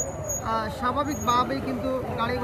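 Voices talking over street traffic, with a steady low engine rumble from passing auto-rickshaws and motorbikes.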